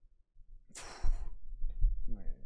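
A man's short breathy sigh close to the microphone about a second in, followed by faint low bumps.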